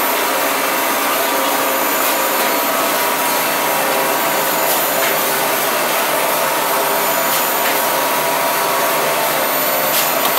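Fully automatic 5-ply corrugated board plant running in production: a loud, steady machine noise with a faint high hum and a few light ticks, as cut board sheets ride the conveyor onto the stack.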